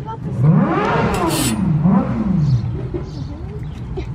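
A young child crying in two long wails that rise and fall in pitch, then whimpering more softly.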